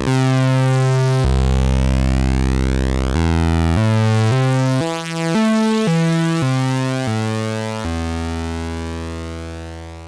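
A DIY analog voltage-controlled oscillator and a Behringer DeepMind 12's digitally controlled oscillator play the same keyboard notes in unison, one held note after another in a run of low notes that climbs and then falls back. The two stay locked in tune: the VCO tracks its pitch well. The tone fades out near the end.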